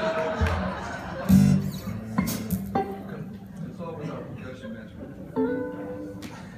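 Live band playing quietly, guitar over a held low note, with a few sharp strikes about two and three seconds in.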